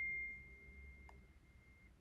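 A single high, pure chime-like note, struck once and left ringing, fading slowly and cutting off near the end. It is the opening of recorded music played back faintly over a computer.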